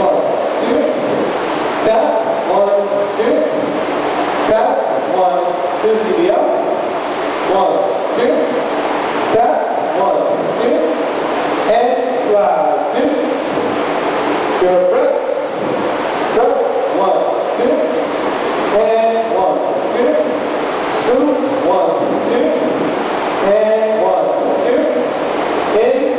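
Voices going on almost without a break, with a roomy echo.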